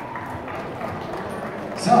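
Scattered, light clapping from a small crowd in a gymnasium, with faint irregular claps over low crowd noise.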